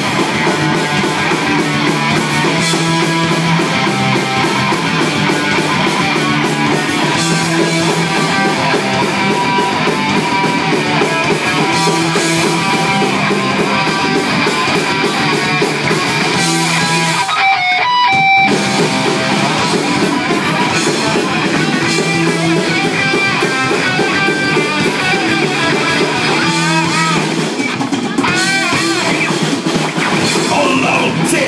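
Live rock band playing loud: distorted electric guitars, bass and drums together, with a short break in the low end for about a second a little past halfway.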